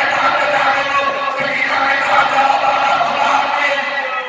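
A man reciting into a microphone over loudspeakers in a drawn-out, chanting voice, holding long notes.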